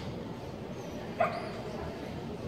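A dog gives a single short, sharp bark about a second in, over steady background noise.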